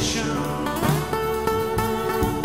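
Live band playing an instrumental break: fiddle and electric guitars holding and moving between sustained notes over drums.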